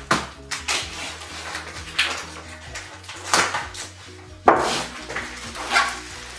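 Plastic export wrap rustling and crinkling in several short bursts as a large wrapped picture is handled, its taped edge pressed down and the parcel lifted, over background music.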